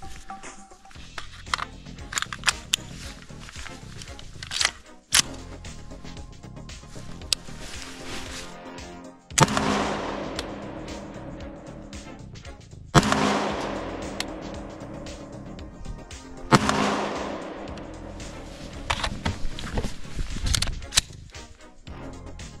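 Three rifle shots from a .223 AR-style rifle, about three and a half seconds apart, each with a long echoing tail, over background music.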